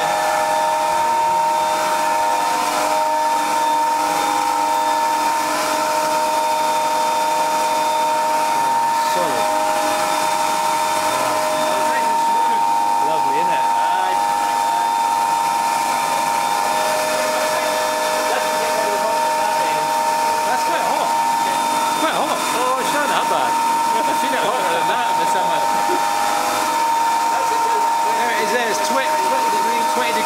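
A 150 kW Canyon Hydro Pelton turbine and its generator running: a steady machine whine made of several held tones over a hiss, even in level throughout.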